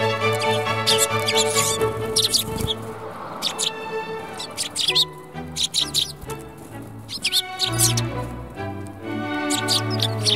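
Background music with long held notes, over which Eurasian tree sparrows give short, high chirps in irregular clusters throughout.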